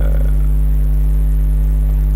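Steady, loud low electrical mains hum with no other sound.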